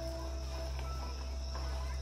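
Crickets chirring steadily, a thin high tone, over a low steady hum.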